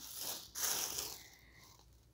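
Soft rustling handling noise in two short stretches over the first second or so, as paper receipts are set down and handled.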